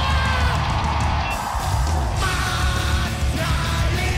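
A live punk rock band playing at full tilt, with a driving drum kit under yelled, chanted vocals.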